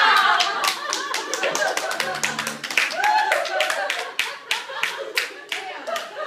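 A small group of people clapping and laughing, the claps coming singly and unevenly rather than as a dense roar. Several voices slide down in pitch together at the very start.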